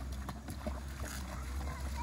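Faint light splashing of a kayak paddle and a child wading through shallow water behind the kayak, over a steady low rumble.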